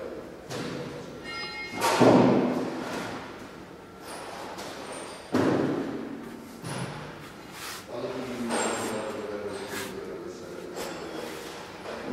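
Two heavy thuds echoing through a large workshop hall, the loudest about two seconds in and a second one about five seconds in, with fainter knocks between and after.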